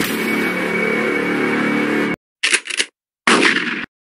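Loud, harsh edited sound effect: about two seconds of dense noise that cuts off abruptly, followed by two shorter bursts that also end sharply.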